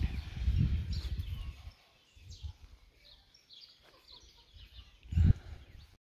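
Low rumble on the phone's microphone, loud for the first second and a half and again in a short burst near the end. Faint bird chirps come through in the quieter stretch between.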